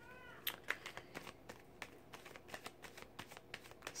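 Tarot cards being shuffled by hand, faint, as a run of soft card clicks. Right at the start a cat gives one short meow that rises and falls.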